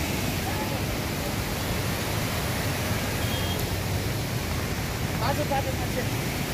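Steady rushing noise of a flooding river in full spate, its fast, muddy water running high under a bridge.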